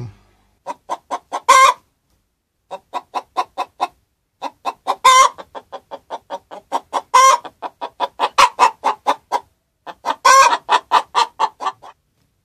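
Hen's egg-laying cackle: runs of short clucks, about three a second, each run rising to a louder drawn-out squawk, four times over. It announces a freshly laid egg.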